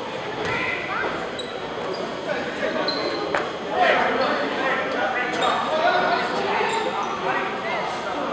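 A basketball bouncing on a hardwood gym floor, with a few sharp knocks and brief high squeaks, echoing in a large gym.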